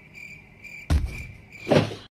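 A cat jumping: a sharp thump about a second in and a louder thud near the end as it leaps off, over a steady high-pitched whine that stops just before the second thud.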